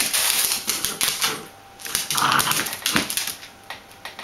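Two Bichon Frisé puppies play-fighting on a hard tiled floor: paws and claws scrabbling and clicking rapidly, with a brief puppy yap about two seconds in.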